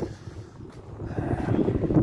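Wind buffeting the microphone outdoors, a low rumble that dips early and swells again toward the end.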